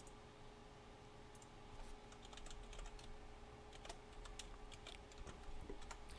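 Faint, irregular key clicks of typing on a computer keyboard, starting about a second and a half in.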